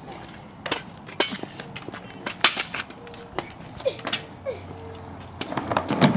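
Small hard wheels rolling on a concrete sidewalk, with scattered sharp clacks as they cross the joints, and a louder rolling rumble building near the end.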